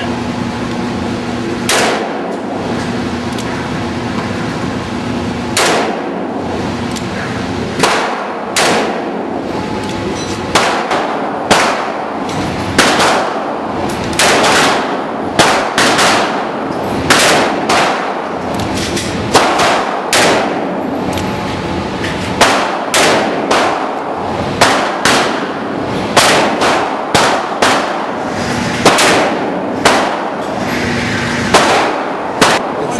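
Gunshots echoing in an indoor shooting range, a .44 Magnum revolver among them: about two dozen sharp reports at irregular intervals, some in quick pairs, each ringing briefly off the walls. A steady low hum lies beneath.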